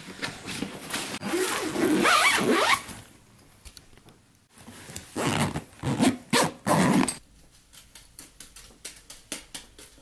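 A zipper on a fabric travel bag being pulled in several quick strokes, with the bag's fabric rustling. Near the end, a run of light, quick taps comes in, several a second.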